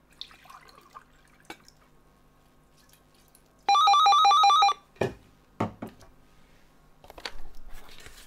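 Telephone ringtone for an incoming call: one loud burst of about a second of rapid warbling electronic tones, two pitches alternating several times, starting about four seconds in. Two sharp knocks follow shortly after.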